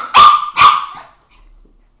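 Papillon dog barking twice in quick succession within the first second, part of an excited barking fit.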